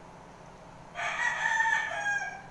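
A rooster crowing once, starting about a second in and lasting just over a second.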